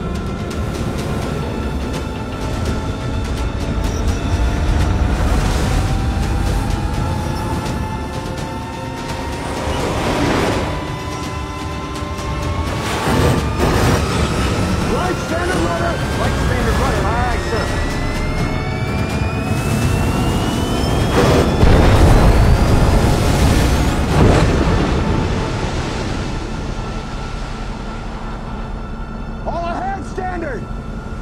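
Film soundtrack mix: dark music over a steady low rumble, with a long tone that slowly rises in pitch over most of the passage. Several heavy booms cut through it, the loudest about two-thirds of the way through.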